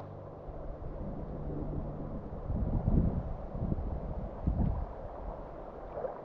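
Low, steady drone of an aircraft engine overhead, with wind buffeting the microphone in uneven gusts about halfway through.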